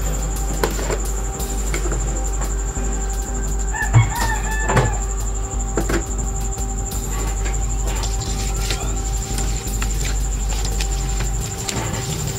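A rooster crowing once in the background about four seconds in, over a steady electrical hum with a high whine, with a few light knocks of ingredients going into a stainless steel bowl.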